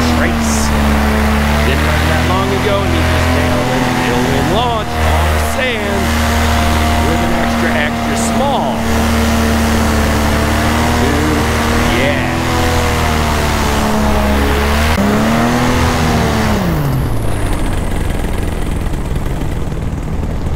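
Paramotor engine and propeller running at a steady drone. About fifteen seconds in its pitch rises briefly, then winds steeply down as the power is cut to glide.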